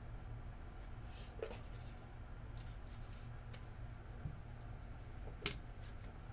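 Trading cards being handled on a table: a few faint clicks and light card-on-card sounds, with one sharper click about five and a half seconds in, over a steady low room hum.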